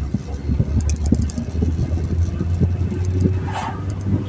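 Steady low drone of a car's engine and tyres heard from inside the cabin while driving, with scattered light ticks and knocks over it.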